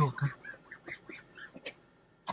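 A few short, faint squeaks and light clicks: a cloth rubbing on freshly dressed dashboard plastic.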